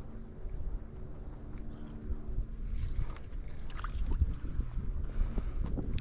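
Wind rumbling on the microphone, with a faint steady hum that fades out about two seconds in, and a few small clicks and handling sounds.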